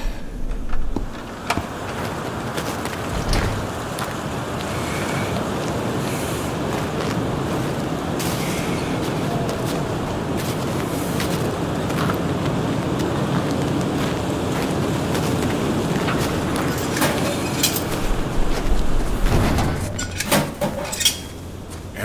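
Storm wind blowing steadily, sound-designed as an Arctic gale. There is a deep thump at the start, and a cluster of knocks and clatters near the end.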